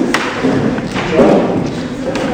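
A few thuds and knocks from people walking on the wooden stage floor, the loudest about a second in.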